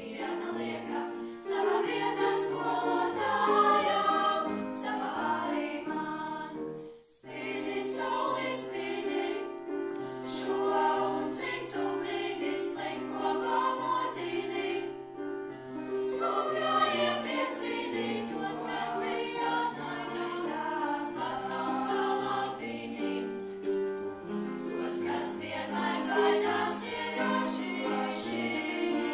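Children's choir of girls' voices singing a song together, with a brief break in the sound about seven seconds in.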